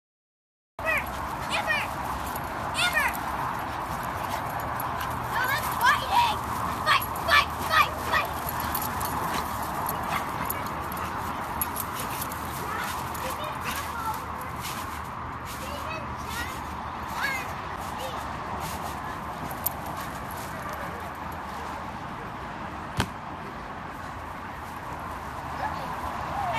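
Dogs barking and yipping in play, with a run of sharp, loud barks a few seconds in and scattered ones later, over a steady background murmur.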